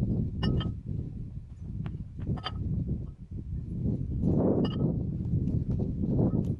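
AR500 steel target plates clinking against the rack's steel hooks and brackets as they are hung: short ringing metal clinks in close pairs about half a second, two and a half and four and a half seconds in, over a low rumbling noise.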